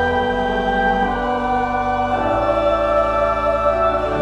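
Mixed church choir singing in parts with pipe organ accompaniment, holding sustained chords that change about a second in and again a little past the middle.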